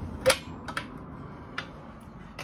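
Steel tool cabinet drawers on ball-bearing runners: one drawer shut with a sharp metallic clack about a quarter second in, then a few lighter clicks as the next drawer is pulled open.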